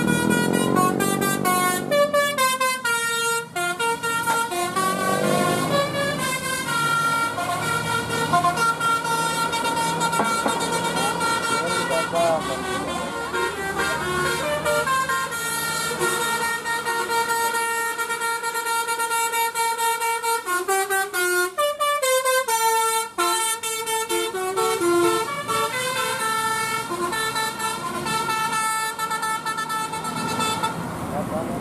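Bus telolet horn, a multi-trumpet musical air horn, playing a long melody of stepped, held notes again and again as tour buses pass. An engine revs up under it near the start and again a few seconds in.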